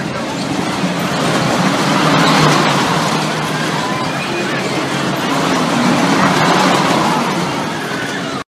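Fairground ambience: carnival rides running amid a crowd of voices, a dense steady din that swells louder twice.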